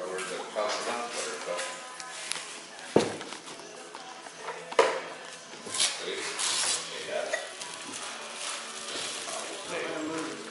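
Gift bags and tissue paper rustling as birthday presents are unpacked, with two sharp knocks and voices in the background.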